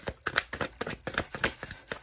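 A deck of tarot cards being shuffled by hand: a quick, irregular run of card flicks and snaps.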